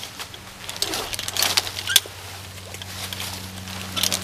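Climbing hardware clicking and clothing and rope rustling as a climber steps up in a foot ascender and weights the rope, with a cluster of sharp knocks about a second in and the sharpest near the middle.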